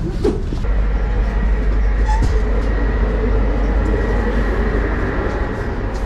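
Steady low rumble of an old passenger train, heard from inside the carriage, with a faint steady whine above it.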